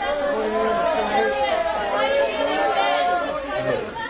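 Crowd chatter: many voices talking and calling out over one another at once, with no single voice standing out.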